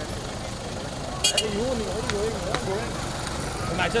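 A Toyota SUV's engine running at low speed with steady street rumble, people's voices calling out over it, and a quick run of sharp clicks about a second in.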